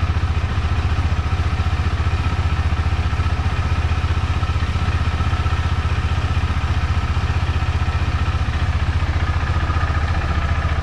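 KTM 390 Adventure's single-cylinder engine idling steadily in neutral, a fast even low pulsing, as it warms up after starting.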